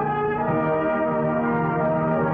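Orchestral film score with the brass to the front, playing held chords that shift to a new chord about half a second in. The sound is narrow and dull at the top, as on an old optical film soundtrack.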